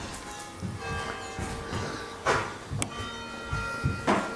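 Church bells ringing, several long overlapping tones sounding and fading, with a couple of soft scuffs of movement.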